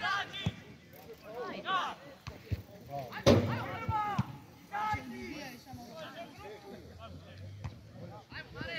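Football players shouting to each other across the pitch in short calls, with one sharp thump about three seconds in, the loudest sound, and a few fainter knocks.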